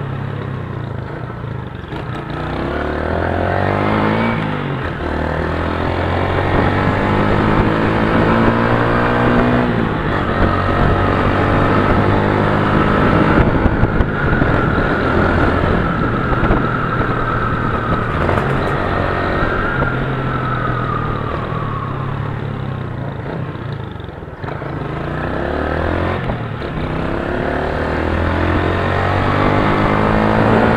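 Motorcycle engine running under way, its revs climbing and dropping again and again as it pulls through the gears. Near the end the revs fall off briefly, then climb once more.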